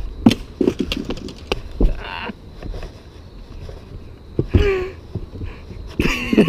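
Men laughing, with one drawn-out groan-like vocal sound about four and a half seconds in, over scattered clicks and knocks in the first two seconds and a low wind rumble on the microphone.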